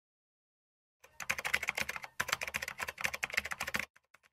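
Rapid keyboard-typing clicks, starting about a second in and running in two bursts with a brief pause between them.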